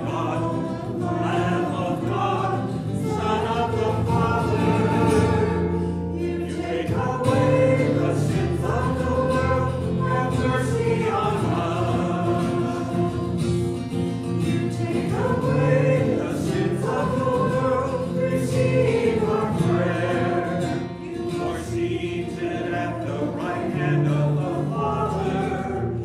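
Voices singing a sung part of the Mass liturgy, with steady instrumental accompaniment holding low notes beneath the melody.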